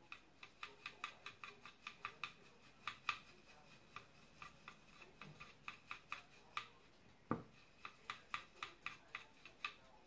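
A paintbrush stirring paint in a well of a plastic stacking palette, mixing blue and yellow into green: faint, quick, irregular clicks as the brush knocks against the plastic, with one duller knock about seven seconds in.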